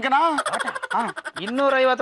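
A person's voice, pitched and bending up and down, with a fast fluttering warble through about the first second.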